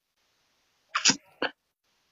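A person's short, sharp burst of breath about a second in, followed by a smaller one just after.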